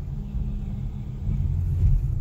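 Low, steady rumble of a car's engine and tyres heard from inside the cabin while driving slowly along a street.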